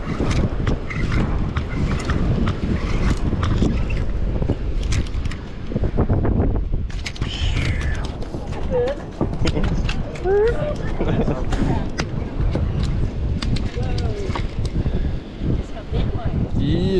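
Wind buffeting the microphone in a steady low rumble, with scattered clicks and knocks and, near the middle, brief wavering pitched sounds.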